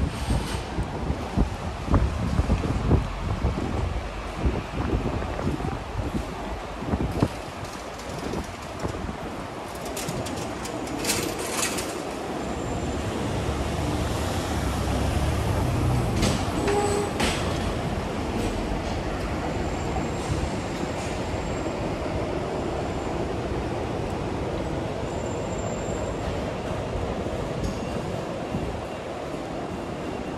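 Busy city-street ambience: irregular gusts buffet the microphone for the first several seconds, then a steady low rumble of traffic takes over, heaviest around the middle. A few sharp clattering knocks come about ten seconds in and again around seventeen seconds.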